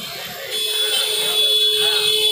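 Electric tattoo machine buzzing steadily while it inks the skin, starting about half a second in.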